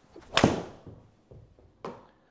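Takomo 101U driving iron striking a golf ball off a hitting mat: one sharp crack about half a second in that dies away quickly in the small bay. The golfer felt the strike as poor, low on the face. A much fainter short sound follows near the end.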